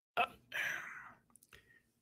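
A person's short mouth click, then a breathy, whispery sound from the voice that fades out over about half a second, with a couple of faint ticks after it.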